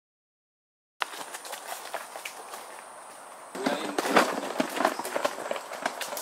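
Silent for the first second, then running footsteps crunching through dry leaf litter and snapping twigs. About three and a half seconds in the footsteps get louder and closer.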